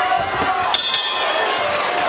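Boxing-arena crowd noise with voices, and a short metallic ring about three-quarters of a second in: the bell ending the round.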